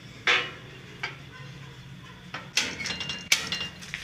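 Front door being closed. There is a sharp knock shortly after the start and a lighter one about a second later, then a short run of rattles and clicks about two and a half seconds in, ending in a sharp click.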